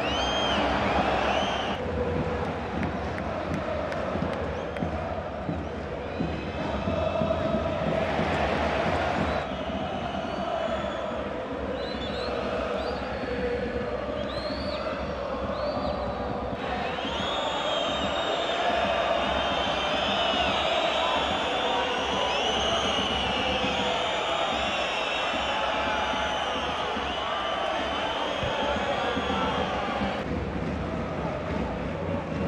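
Football stadium crowd noise from a match broadcast: a steady roar of many voices with shrill rising and falling whistles on top, which get much denser about halfway through.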